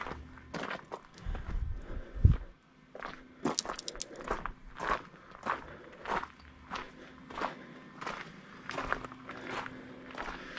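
Footsteps on gravel, about two steps a second, with a low thump a little after two seconds in.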